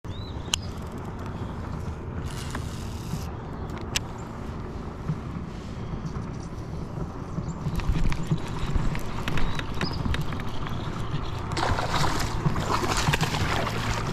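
Largemouth bass being played on a baitcasting rod and reel from a kayak: low rumble of wind and handling on the microphone, with a few sharp clicks. In the last couple of seconds, water splashes as the hooked fish thrashes near the surface beside the kayak.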